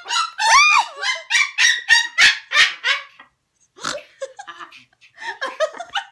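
Pet parrots imitating human laughter. An arching squawk opens it, then a rapid run of shrill "ha-ha" bursts, about three to four a second. After a short pause come a few more scattered laughs.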